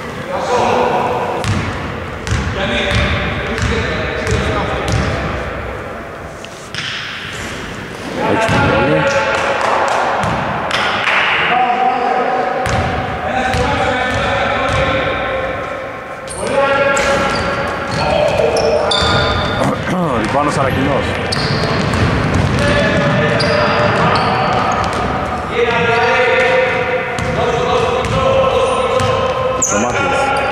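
Basketball bouncing repeatedly on a wooden gym floor, with players' voices calling out, echoing in a large sports hall.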